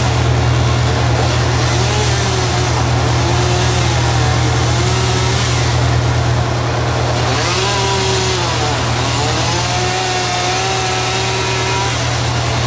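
Engine of a tree crew's bucket truck running steadily with a low drone, while a higher whining note rises and falls several times above it.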